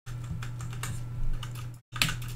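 Quick, irregular clicks and taps of a computer keyboard and mouse being worked, over a steady low electrical hum. The sound cuts out briefly near the end.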